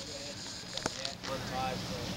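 Steady low hum of a tall ship's machinery, with indistinct voices of people on deck over it and one sharp click a little under a second in.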